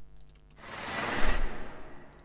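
Helicopter sound effect with a lot of reverb, fading in as a rushing swell of noise about half a second in, peaking after about a second, then easing off.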